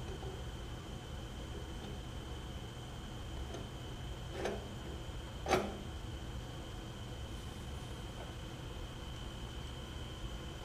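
Two light metal knocks, about four and a half and five and a half seconds in, the second the louder, as a tractor carburetor is worked into place against the engine's intake manifold, over a steady low hum and a faint steady high tone.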